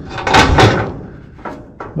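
A reproduction roof piece for a Model A coupe is set and pressed against the car's wooden top frame: a couple of sharp knocks about half a second in, then lighter taps near the end.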